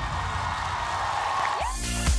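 Music: a pop song's backing track holding at its close, cut about three quarters of the way in by an electronic dance beat with a regular thump.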